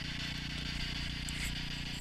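Steady outdoor background noise: a constant high-pitched buzz over a low hum, with no distinct events.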